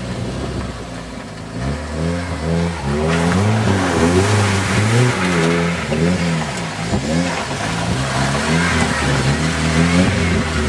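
Jeep Wrangler engine revving up and down repeatedly while driving off-road. It is quieter for the first second or two, then louder, with its pitch rising and falling several times.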